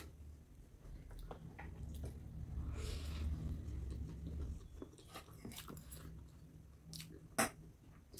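Close-miked chewing of a mouthful of noodles, quiet and low, with a few sharp clicks of forks against the plates, the loudest near the end.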